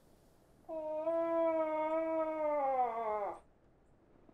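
A hunter's voiced moose call through a hand-held yellow calling cone, imitating a cow moose. It is one long call of about two and a half seconds, starting a little under a second in, holding its pitch and then sliding down at the end.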